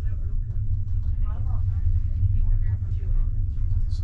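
Steady low rumble of a passenger train carriage's interior on the Enterprise, with faint voices underneath.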